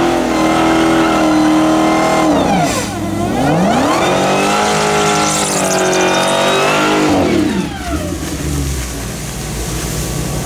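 Dodge Demon 170's supercharged 6.2-litre V8 doing a burnout: the revs climb and are held high for about two seconds, drop, climb again and hold for about three seconds, then fall away to lower, uneven running near the end.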